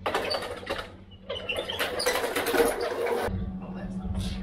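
Rapid metallic rattling and clatter of a heavy steel bucket riding on a wheeled dolly as it is rolled over concrete, in two stretches. About three seconds in it gives way to the steady low hum of a pickup truck's engine idling.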